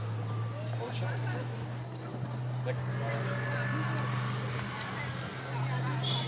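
A steady low engine-like hum, with faint voices of people talking in the background.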